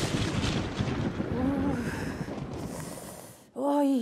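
Thunder sound effect: it starts loud with a crack and rumbles down, fading over about three and a half seconds.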